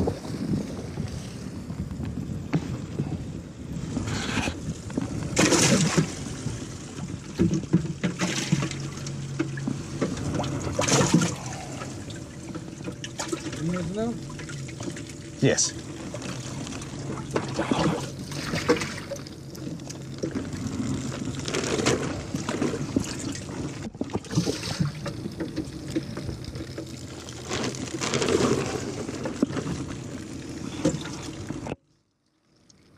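Water trickling and pouring, in keeping with a bass boat's livewell being pumped out, under indistinct voices and scattered knocks.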